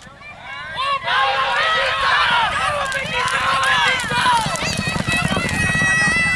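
Loud, excited shouting of a voice cheering on the horses at the finish of a short horse race, rising sharply about a second in and running on in high, swooping calls.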